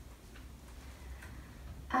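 Quiet room tone with a steady low hum and a few faint, irregularly spaced clicks. A woman's voice begins right at the end.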